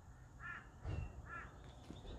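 A bird calling faintly, two short calls under a second apart.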